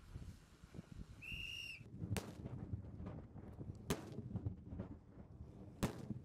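A single short whistle blast, then three sharp cracks a little under two seconds apart: small explosive charges going off on wooden posts in a blasting drill.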